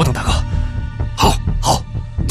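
A man's voice speaking in Mandarin over a steady background music score, with a few short, harsh vocal bursts.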